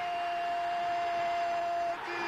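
A TV football narrator's long held goal shout, one sustained high note that slides up slightly at the start and drops off just before the end, over stadium crowd noise.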